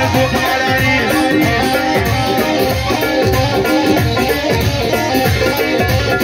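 Loud amplified live band music: a plucked-string melody over a steady drum beat.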